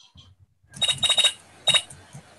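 Short burst of high electronic chirps coming over the video-call audio: four quick pulses, then one more about half a second later.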